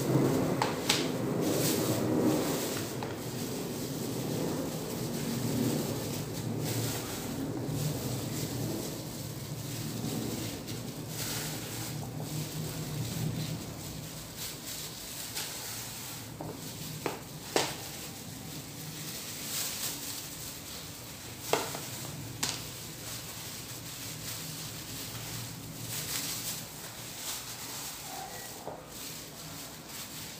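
Handling sounds of a plastic-gloved hand placing sliced strawberries on a cake: soft rustling of the plastic glove and plastic wrap, with a few light clicks and taps, over a low steady hum.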